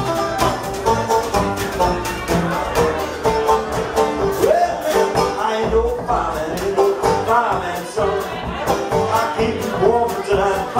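A live band playing: banjo picking over upright bass and a drum kit, with a steady plucked-and-drummed beat.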